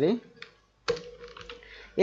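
Computer keyboard keystrokes while a text field is edited: a sharp click about half a second in and another just before one second, with a faint steady hum between.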